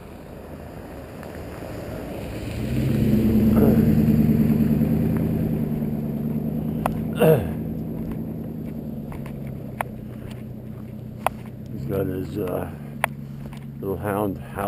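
A vehicle on a gravel road, its engine and tyres growing louder over the first few seconds, loudest about four seconds in, then slowly fading as it goes on up the road. A few sharp clicks and a brief voice come near the end.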